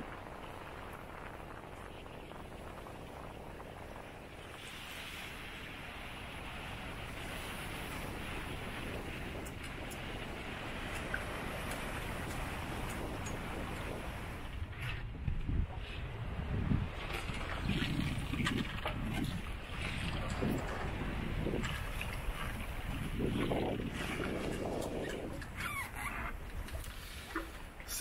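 Wind and choppy sea rushing past a small sailboat under way in a strong breeze. From about halfway through, gusts buffet the microphone irregularly.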